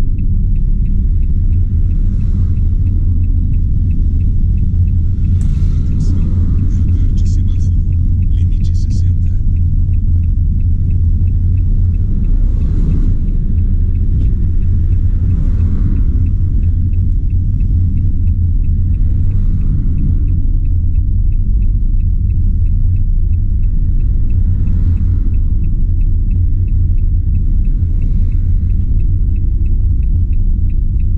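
Steady low rumble of a van's engine and road noise heard from inside the cabin while driving, with a fast, even ticking running throughout.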